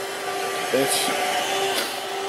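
Steady fan-like rushing noise with a constant hum underneath, and one brief spoken word about a second in.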